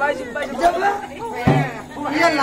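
Several voices talking, with one low drum stroke about one and a half seconds in.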